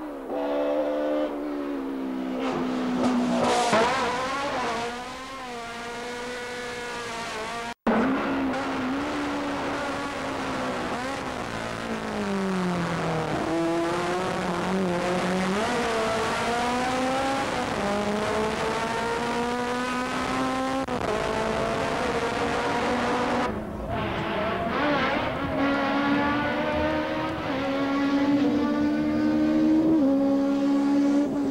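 Racing car engines at full throttle on a hill-climb course, a BMW M3's four-cylinder among them: pitch climbs under acceleration, drops at each gear change and falls away under braking before climbing again. The sound breaks off abruptly twice as one car gives way to the next.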